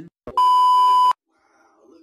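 A TV colour-bars test-tone beep used as a transition sound effect: one loud, steady high tone lasting under a second, with a short click just before it.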